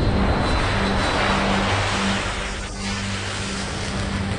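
Jet airliner flying overhead: a steady rush of engine noise that eases off a little after about two and a half seconds.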